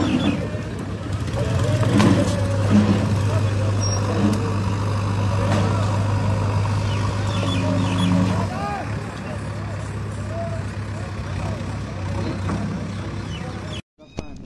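A vehicle engine running with a steady low drone for several seconds, under indistinct voices of people talking. The drone stops about two thirds of the way in, and the sound drops out briefly just before the end.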